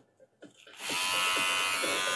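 WMARK NG-988 twin-foil electric shaver's motor starting after a brief silence about three-quarters of a second in. It rises briefly in pitch, then runs with a steady buzz.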